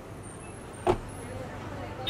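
A car's rear passenger door pulled shut from inside, closing with a single solid thud about a second in, over a low steady background hum.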